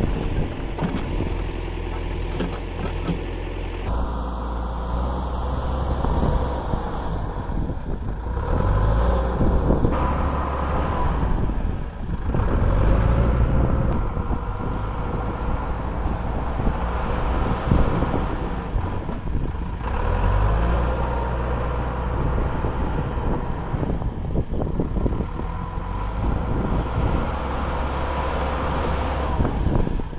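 John Deere 310SE backhoe's diesel engine running while the machine backfills the trench with its buckets. The engine speed and load rise and fall every few seconds as it digs into and pushes the dirt.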